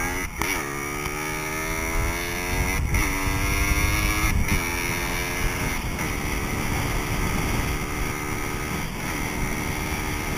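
Dirt bike engine under way, heard from the rider's helmet camera: its pitch climbs and then drops sharply several times, as with gear changes, over a low rumble of wind on the microphone.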